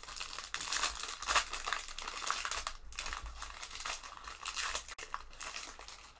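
Foil trading-card pack wrapper crinkling and tearing as it is pulled open by hand, in an irregular run of rustles.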